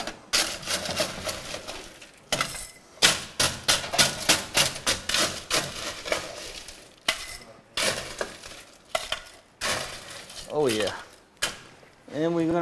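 Crushed ice being scooped and packed into a glass: a run of rapid crunching, clinking clatters of ice against the scoop and glass. A brief voice is heard near the end.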